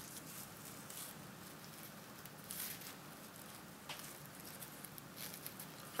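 Faint rustling of tulle and narrow ribbon handled by fingers as a ribbon is tied to a loop of a tulle pom pom, with a few brief soft crinkles.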